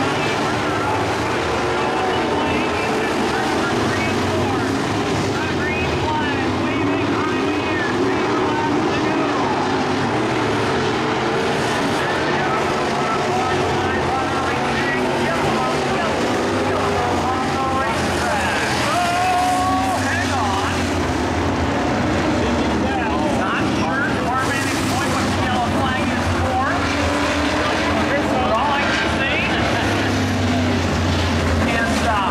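Dirt-track modified race cars' V8 engines running and revving as the cars circle the oval, heard from the grandstand, with people's voices mixed in.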